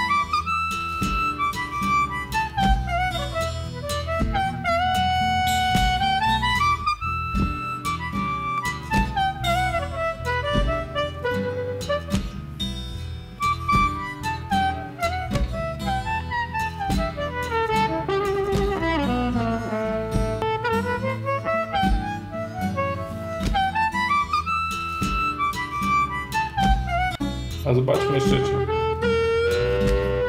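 Playback of a band mix featuring a harmonica melody with long sweeping bent notes over drums and a steady bass line. The harmonica track runs through a ReaXcomp multiband compressor that is switched between bypassed and active.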